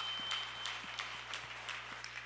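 Congregation applauding: many irregular hand claps over a hiss of clapping, slowly thinning out. A faint steady high tone sounds during the first half-second or so.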